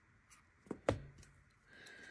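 Scissors snipping loose yarn ends off crocheted work: two sharp clicks of the closing blades, about three-quarters of a second and a second in, the second louder.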